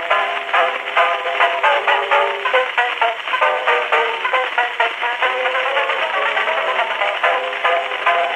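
Solo banjo playing a ragtime tune from a 1902 Edison Gold Moulded wax cylinder, played back acoustically through the horn of a circa-1905 Edison Home Phonograph, Model A. Quick plucked notes follow one another steadily, in a narrow band with no deep bass and no high treble.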